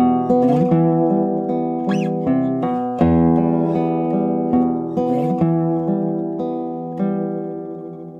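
Classical guitar playing a slow piece: plucked notes and chords ring over one another, and the last chord fades away near the end.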